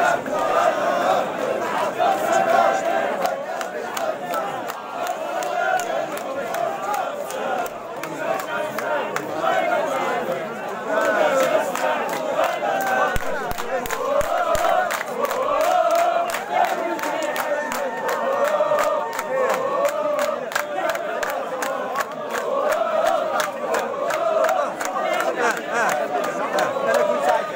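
A large outdoor crowd chanting and shouting together, many voices overlapping without pause.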